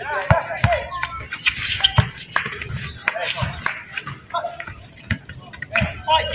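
Basketball thumping on a concrete court several times at uneven intervals, with players' voices calling out during play.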